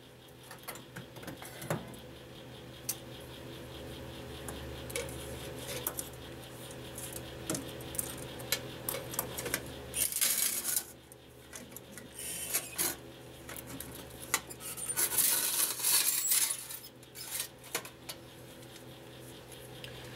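Long steel tongs clinking and scraping against tool-steel tappets and the heat-treat furnace as the parts are lifted out after their second temper, scattered metallic clicks with denser scraping about ten seconds in and again around fifteen seconds, over a steady electric hum.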